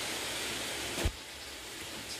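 Steady background hiss with one sharp click about a second in, after which the hiss drops a little.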